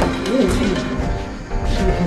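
Background music, with a sharp smack right at the start as a kick lands on a blocking arm during Muay Thai sparring.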